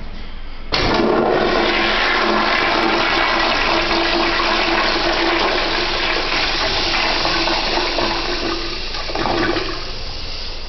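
Toilet flushing: a loud rush of water starts suddenly under a second in, with a steady whistling tone running through it, then swells briefly and stops near the end.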